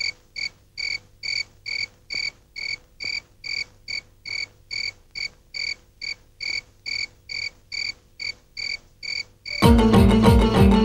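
A cricket chirping steadily, a little over two short chirps a second, as a night-time ambience effect. Music comes in near the end.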